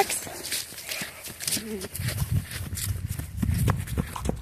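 Irregular soft thumps and clicks of footsteps and dogs' paws on grass as dogs play with a ball, over a low rumble. A brief low voiced sound comes about a second and a half in.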